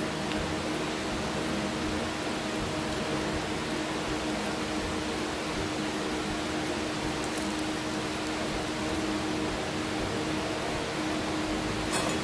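Hot oil sizzling steadily in a frying pan around the fat edge of a pork chop, crisping the fat, with a few faint pops over a steady low hum.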